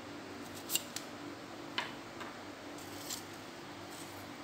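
About five short, sharp clicks as the gold-coloured butt cap is worked off a Shimano 5H carbon telescopic pole rod and set down on a wooden table.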